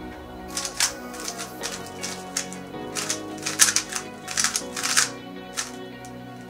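GTS2M magnetic 3x3 speedcube being turned quickly in hand. Its plastic layers make clusters of rapid clicks that come in bursts.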